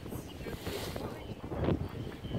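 Wind buffeting the microphone in uneven gusts, with a stronger gust near the end.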